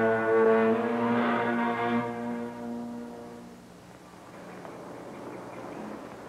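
Orchestral film score, a sustained brass chord that fades away over the first few seconds. Faint, even background noise is left after it.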